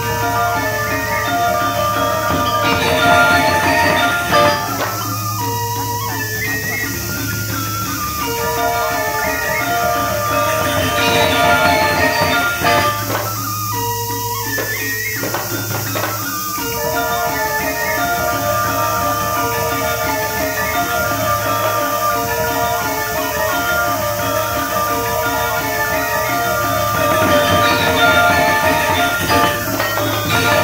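Balinese gamelan music: ringing bronze metallophone tones over a steady low gong tone, with sharp drum and cymbal accents a few seconds in and again around the middle.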